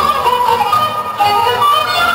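A children's folk group singing a Romanian folk song in a high, ornamented melody, with instrumental accompaniment.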